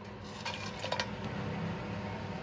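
Whole spices sliding off a plate into a pan of hot oil, with a few light clicks and taps about half a second to a second in.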